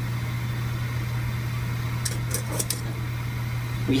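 Steady low background hum in a kitchen with a gas burner running, with a few faint light clicks a little past halfway.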